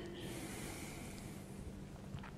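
A man drawing a soft breath that lasts about a second, heard as a faint hiss over a low steady room hum.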